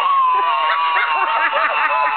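A woman's long, high-pitched squeal, held for nearly two seconds and sinking slightly in pitch, over short bursts of laughter.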